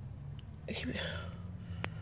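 Faint, muffled voices from outside the car, heard through the closed cabin over a low steady hum, with a single sharp click near the end.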